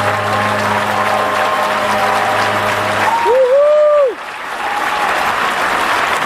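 Concert audience applauding and cheering, with the band's final held chord underneath until it ends about three seconds in. A loud rising-and-falling 'woo' from a fan stands out just after the chord stops.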